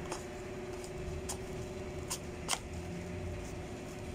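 Hands fitting plastic parts onto a gel-ball blaster: four sharp plastic clicks and some handling noise as the gel-ball hopper is pushed into its mount, over a steady low hum.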